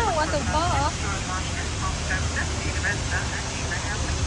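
Small tour boat's motor humming steadily low under a wash of water and wind noise. A toddler's high, sing-song voice sounds over it for about the first second.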